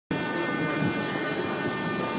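Steady mechanical drone of an underground metro station, with several thin high whining tones held level above it.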